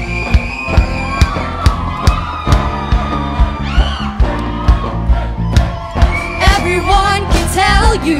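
Live pop band playing, with a steady drum beat of a little over two hits a second under held keyboard tones. Singing comes in strongly near the end.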